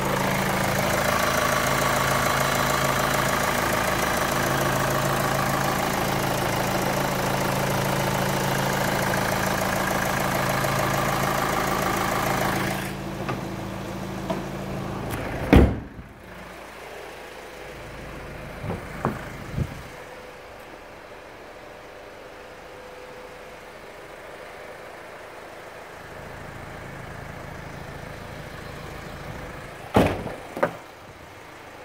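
2013 Kia Sportage engine idling steadily, heard up close over the open engine bay. Partway through it drops much quieter, and a single loud slam follows, the hood being shut. The idle then carries on faintly, with a few light clicks.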